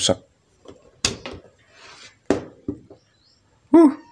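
About four sharp plastic clicks and knocks, the first about a second in: a mains plug being pulled out of a power strip and its leads handled on a workbench.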